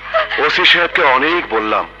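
Film dialogue: a man speaking Bengali, over a steady low hum in the soundtrack.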